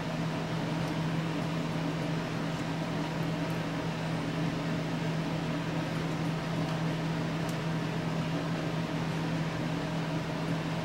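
Steady mechanical hum with a constant low tone and even hiss, like a fan or small motor running.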